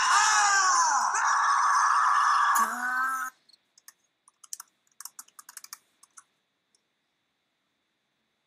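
Grasshopper mouse howling: one long, high call with sliding pitch, staking its claim to territory, which ends about three seconds in. Then a scatter of short clicks, which fit a computer mouse being clicked.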